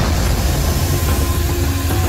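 A loud, steady deep rumble with faint held tones entering about a second in: a dark drone in the film's soundtrack.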